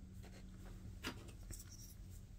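Faint handling noise as a plastic miniature on its round base is picked up off a cutting mat, with a light tick about a second in and softer ones just after, over a low steady hum.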